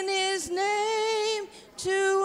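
A woman singing a worship song solo and unaccompanied into a microphone, holding long sustained notes with a slight vibrato, with a brief breath pause near the end.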